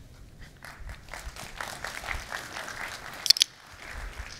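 Quiet scattered clicks and rustling, with one sharp click a little after three seconds in.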